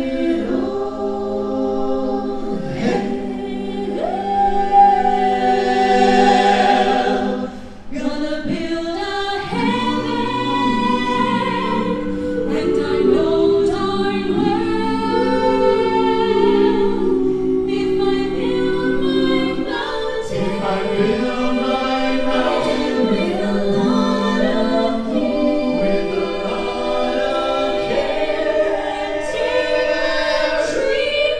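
Mixed men's and women's a cappella vocal ensemble singing in close harmony through a stage sound system, with no instruments. The voices break off briefly about eight seconds in and then go on.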